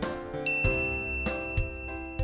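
Background music with a steady beat, and a single bright, high ding sound effect about half a second in that rings on for over a second.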